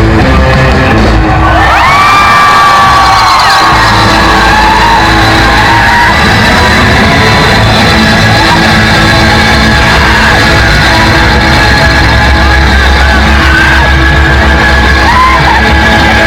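Surf rock band playing loud and heavily saturated, heard from inside a packed crowd, with yells from the audience over it; one long held cry rises and falls about two seconds in.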